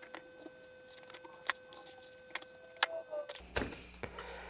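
Faint, scattered clicks and taps from hands handling a glue bottle and a rocket body tube with wooden centering rings while glue fillets are run around the rings.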